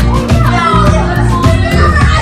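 A group of children chattering and calling out over background music.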